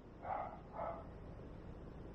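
A dog barking twice, about half a second apart, over a faint steady low rumble.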